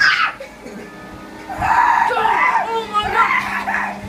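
Young people shrieking and laughing loudly over background music, starting about a second and a half in.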